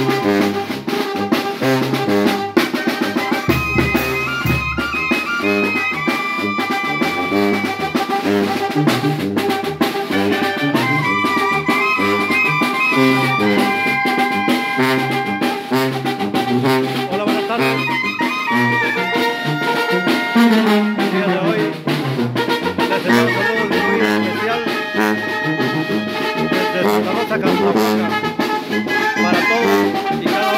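Mexican village wind band (banda) playing: clarinets and trumpets carry the melody over a sousaphone bass line, with cymbal and drum keeping a steady beat. Near the middle a low brass line slides downward.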